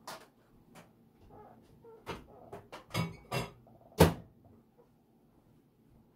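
Whirlpool over-the-range microwave door being shut and a plastic microwave egg boiler handled on the counter: a run of sharp clicks and knocks, the loudest about four seconds in.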